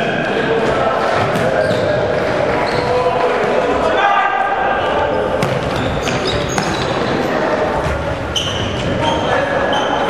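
Indoor futsal game echoing in a large sports hall: the ball thuds as it is kicked and bounces on the wooden floor, among players' shouts and a few brief high shoe squeaks.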